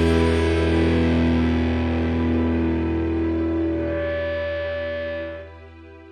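Final chord of a rock song: distorted electric guitar ringing out and slowly fading, then dropping away sharply about five and a half seconds in, leaving a faint ringing tail.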